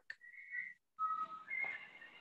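Three faint, short whistle-like tones, each held at one pitch: a high one, a lower one a second in, then the high one again.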